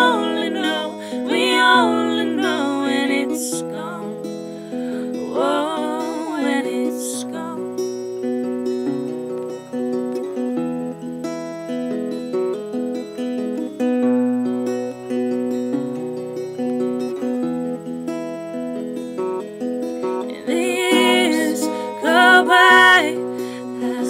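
Acoustic guitar playing steady chords with a changing bass line. A woman's voice sings briefly near the start, once more a few seconds later, and again near the end.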